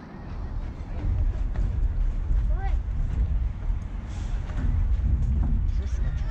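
A low, uneven rumble of wind buffeting the microphone, with faint distant voices from the field.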